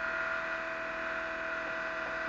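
Muller-type magnet motor running steadily on about 7 volts, its rotor turning past pulsed driver coils: a steady whir with a few held tones.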